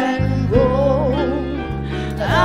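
Women's vocal trio singing a gospel song into handheld microphones over an accompaniment with steady bass notes. A held note with vibrato gives way to a new sung phrase about half a second in.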